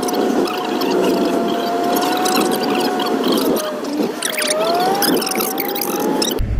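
Road and running noise inside a moving vehicle's cabin, with a steady whine that slowly sags in pitch, then dips and rises again about four to five seconds in.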